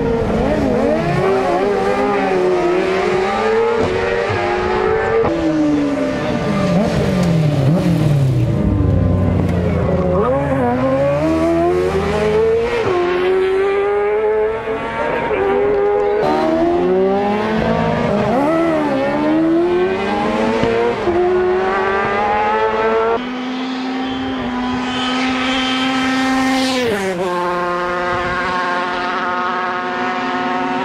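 Racing sidecar engines revving hard and changing gear as several outfits pass one after another, their pitch rising and falling over and over. About 23 seconds in the sound cuts to a steadier engine note from solo racing motorcycles, which rises sharply near the end as they approach at speed.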